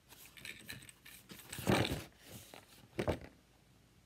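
Paper pattern leaflet rustling as it is handled and flipped over, with the loudest rustle a little before two seconds in and a shorter one about three seconds in.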